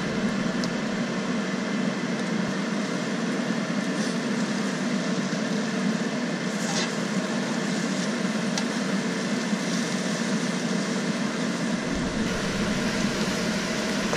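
Eggs and scallops frying in a nonstick wok, a steady sizzle over a constant hum, with a few light taps of the slotted spatula against the pan.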